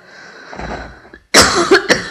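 A person draws a breath, then coughs loudly about a second and a half in, with a second cough near the end.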